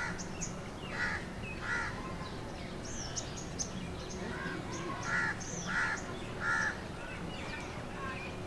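Birds calling among park trees: a series of short, harsh repeated calls, about seven of them, with higher chirps scattered in between, over a steady low background hum.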